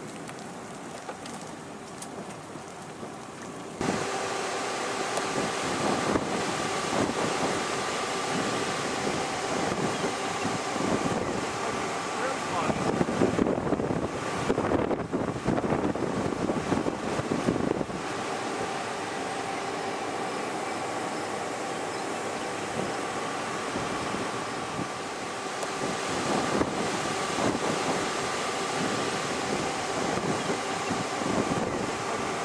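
Thunderstorm wind gusting across the microphone, rough and loudest for several seconds around the middle, over a steady hum with a few faint held tones.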